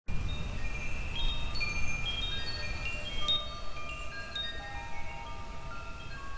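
Wind chimes ringing: many clear tones at different pitches struck at random, each ringing on, over a low rumble that fades after the first couple of seconds.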